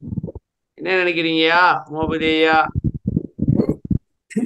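A man's voice speaking over a video call in two phrases, with choppy, muffled low rumbling between and after them.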